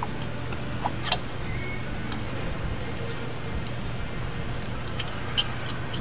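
A few sparse, light metallic clicks and taps as a drum brake shoe's hold-down pin is pushed through the backing plate and fitted against the shoe, over a steady low hum.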